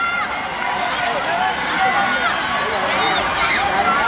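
Many spectators' and coaches' voices shouting over one another in a large hall, a steady din of overlapping calls with no single voice standing out.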